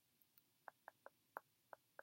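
Near silence with a string of faint, light clicks, about eight of them at uneven spacing.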